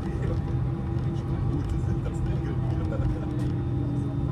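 Inside an airliner cabin while taxiing after landing: a steady low rumble and hum from the engines at idle and the rolling aircraft, with indistinct passenger chatter underneath.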